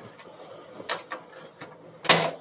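A few light plastic clicks and knocks, the loudest about a second in, as the drain-pump filter access cover of a GE combination washer-dryer is pressed back into place on the front panel.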